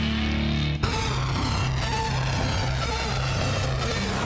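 Music: a held low chord cuts off abruptly about a second in, and a different track with a repeating low beat takes over.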